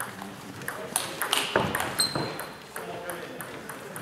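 Table tennis rally: the ball clicking off the bats and the table in quick alternation, the hits coming thickest in the middle, with a brief high squeak about halfway through.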